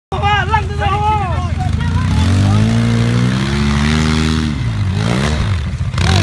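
Polaris RZR 800 side-by-side's twin-cylinder engine revving up and holding high revs under load as it climbs a steep dirt hill, with a dip and swing in revs near the end. A voice calls out over the engine in the first second or so.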